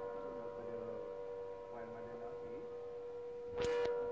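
A steady, even hum made of a few fixed tones. It is interrupted near the end by a brief, loud rustle or knock lasting under half a second.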